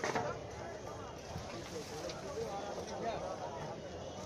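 Background chatter of several people talking at once, no single voice standing out, with a brief knock right at the start.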